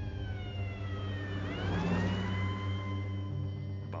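An emergency-vehicle siren wailing. Its pitch falls for the first second and a half, then sweeps up and holds high, over a steady low hum.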